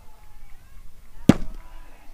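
One sharp, loud crack of a pitched baseball striking at home plate, a little over a second in, with a short ringing tail.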